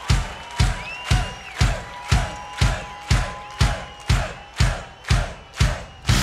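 Live rock song intro: a bass drum beating steadily about twice a second under a held note, with the crowd cheering and whistling between the beats. The full band comes in at the very end.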